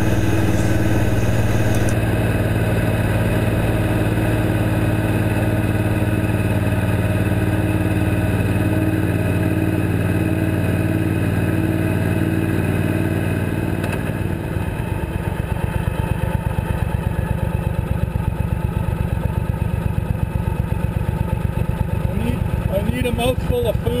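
Suzuki Boulevard C90T cruiser's V-twin engine running steadily at road speed. About 14 seconds in, the note drops and turns into a distinct pulsing beat.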